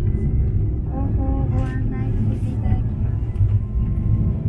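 Steady low rumble of a Kurodake Ropeway aerial tramway cabin running along its cable, heard from inside the cabin as it nears a lattice support tower. Faint snatches of a voice or tune sound over it between about one and three seconds in.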